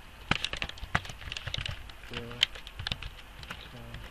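Typing on a computer keyboard: a run of irregular keystrokes starting a moment in and continuing throughout.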